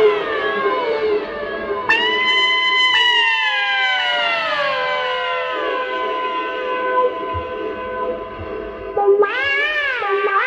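Electric trumpet through electronic effects playing long notes that slide slowly down in pitch over steady held tones. A new note cuts in about two seconds in, and near the end a louder note enters, wavering up and down in pitch.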